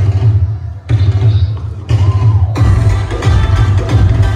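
Loud Punjabi folk dance music with a heavy, pounding low beat and a vocal line. The treble drops out in steps for the first two and a half seconds or so, then the full mix comes back.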